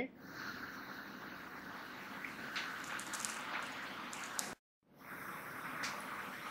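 Faint steady hiss of room tone with a few soft ticks, broken by a brief dead-silent gap a little past halfway.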